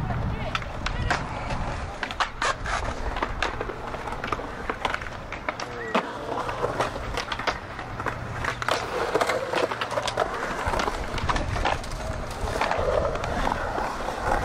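Skateboard wheels rolling on a concrete bowl: a steady low rumble broken by many sharp clacks and knocks from the board on the concrete and coping.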